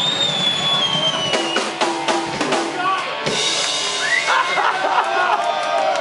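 Live punk band's drum kit being struck repeatedly, loud and steady. A high whistling tone slides down in pitch over the first second and a half, and a shouting voice comes in near the end.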